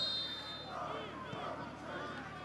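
A referee's whistle blast that stops less than a second in, followed by quieter stadium ambience with faint distant shouts from players and crowd.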